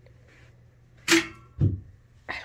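A woman coughing: two sharp coughs about half a second apart, the second near the end.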